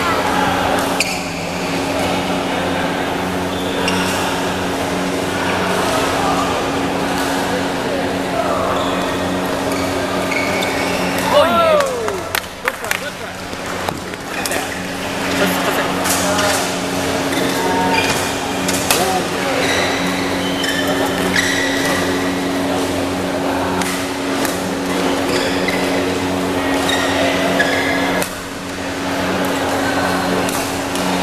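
Badminton doubles rally: sharp racket strikes on the shuttlecock and shoe squeaks on the court floor, over the chatter of spectators and a steady low hum in a large hall.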